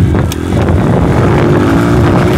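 Modified Honda motocross dirt bike engine running while riding, loud. It dips briefly just after it starts, then settles into a steadier note in the second half.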